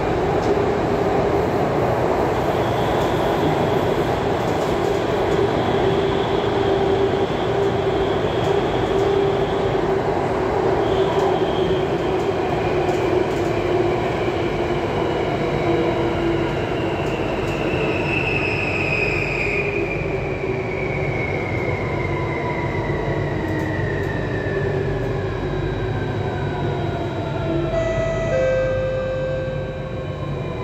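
Inside a Singapore Circle Line C830 (Alstom Metropolis) metro car at speed: steady running noise with a high electric traction-motor whine. Through the second half the whine falls steadily in pitch as the train slows for the next station.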